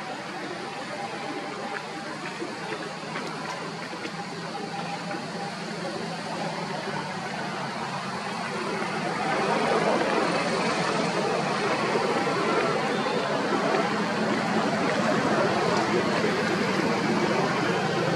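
Steady outdoor background noise with no distinct events, growing louder about halfway through.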